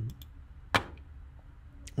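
A few faint clicks of a computer mouse over quiet room tone, with one short spoken word about halfway through.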